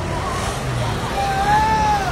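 Busy street ambience: a steady rumble of motor traffic with people about, and one drawn-out call that rises slightly and falls, starting a little past a second in.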